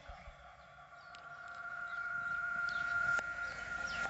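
A steady high-pitched tone holding one pitch, swelling gradually louder and cutting off just as speech resumes.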